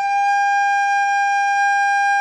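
Soprano recorder playing one long, steady note G, fingered with the thumb hole and three front holes covered.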